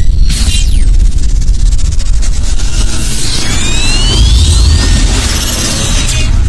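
Cinematic logo-intro sound effects: a loud, continuous deep rumble with boom-like hits, a falling whoosh about half a second in, and rising whistling sweeps a little past halfway.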